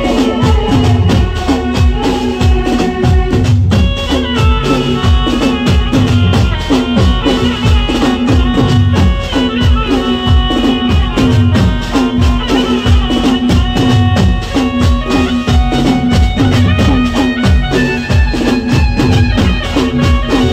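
Instrumental interlude of live Gujarati folk music over a PA: dhol and drums keep a steady, fast beat under held melody notes.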